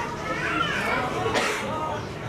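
Background voices talking in a room, children's voices among them, with no clear words.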